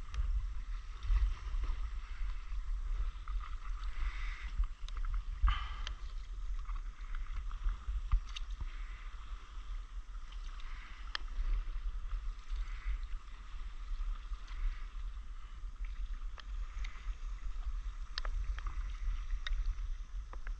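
Paddle strokes and water splashing and lapping around a stand-up paddleboard, with scattered small splashes and a steady low rumble underneath.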